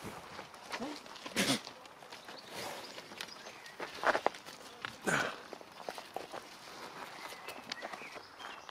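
Footsteps and scuffing on dry dirt ground, with a few short, louder noises about a second and a half, four and five seconds in.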